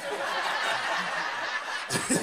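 A group of people laughing together, a steady spell of chuckling and snickering.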